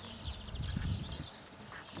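A horse trotting on an arena's sand surface: its hoofbeats, with a low rumble swelling in the first second.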